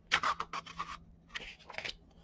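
Paperback book pages being flipped quickly by hand: a string of uneven paper rustles and flicks.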